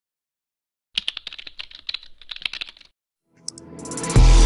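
Rapid keyboard-typing clicks, starting about a second in and lasting about two seconds, then a short gap and a swell of electronic sound rising into the intro music near the end.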